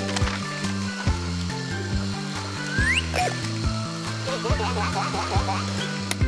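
Upbeat cartoon background music with a steady bass line and regular beat. A rising whistle-like sound effect comes about three seconds in, and short chirpy sound effects follow near the end.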